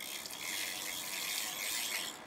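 Road bike's rear freehub ratchet clicking in a fast, steady buzz as the cranks are turned backward, the chain running over the sprockets.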